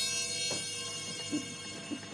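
A pair of chappa, small brass Japanese hand cymbals, ringing on after a single strike, a shimmer of many high tones slowly fading away. A faint tap comes about half a second in.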